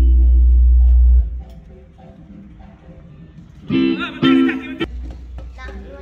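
Electric guitar played through stage speakers during a soundcheck: a few notes over a deep low drone that cuts off about a second in, then two loud strummed chords about four seconds in.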